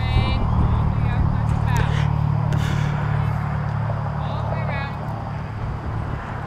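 Low, steady engine rumble that fades away about five seconds in, with faint distant voices over it.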